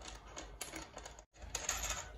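Light metallic clicks and ticks of a small steel bolt and a bicycle headset top cap being handled as the top-cap bolt is unscrewed and pulled out by hand. There is a scatter of single clicks, with a quicker run of them near the end.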